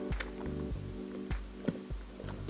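Quiet background music with held notes, with a few light taps of a spatula against a stainless steel mixing bowl as batter is folded.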